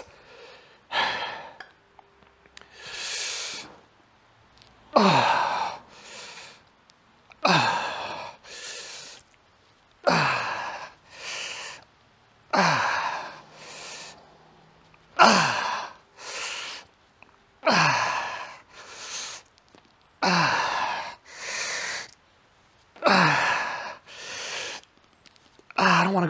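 A man breathing hard through a set of dumbbell flies: about every two and a half seconds, a loud exhale whose pitch falls, followed by a quieter breath in, about nine times over.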